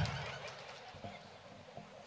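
Laughter trailing off, fading to faint scattered sounds within about a second and a half.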